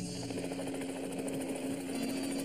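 Cartoon sound effect of the Planeteers' Geo-Cruiser aircraft in flight: a steady engine drone at one pitch with a fast, even flutter.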